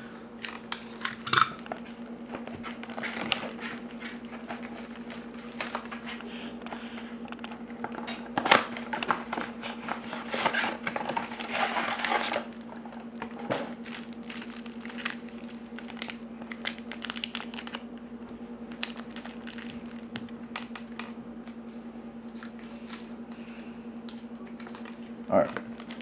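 Trading-card packaging being handled and torn open: plastic wrapping and foil packs crinkling and tearing in scattered clicks, with a denser stretch of crinkling in the middle, over a steady low hum.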